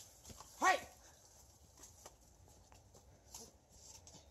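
A man's single loud, short shout of "hey!", followed by a few faint, scattered light knocks.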